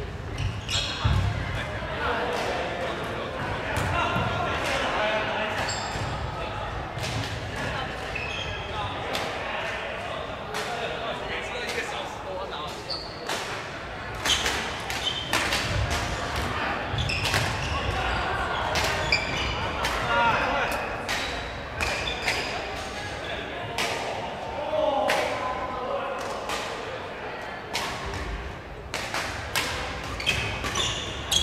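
Badminton rackets hitting shuttlecocks, many sharp cracks from this and neighbouring courts, with sneakers squeaking on the wooden floor, echoing in a large hall. Voices chatter throughout.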